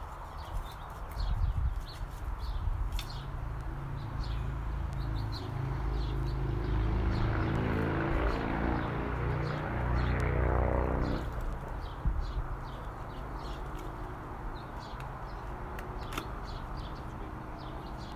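Small birds chirping throughout, over an engine hum that builds for several seconds, peaks and drops away about eleven seconds in, like a vehicle passing by.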